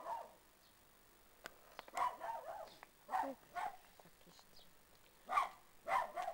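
A dog barking: about six short single barks at irregular intervals.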